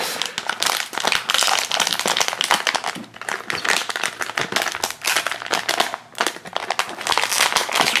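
Foil blind bag crinkling and crackling as hands pull and twist at it, trying to tear it open; the bag won't open. The crackling eases briefly about three seconds in and again around six seconds.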